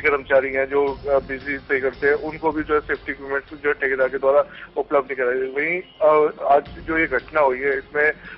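Only speech: a man talking steadily in Hindi.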